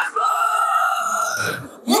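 Isolated female metal vocals with no instruments: one long sung note held steady for about a second and a half, a low gravelly vocal sound coming in underneath as it fades, then the next sung word starting near the end.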